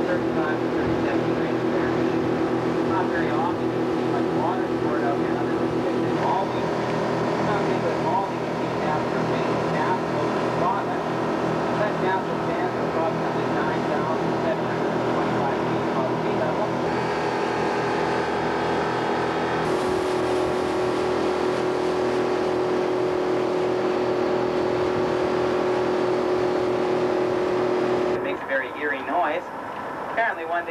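A boat's motor running steadily at cruising speed, with water rushing in the wake; its pitch steps slightly a few times and the sound falls away near the end.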